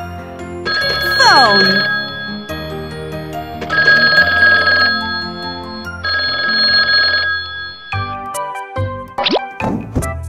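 Cartoon toy telephone ringing in three bursts of about a second each, over background music; a falling swoop sounds with the first ring.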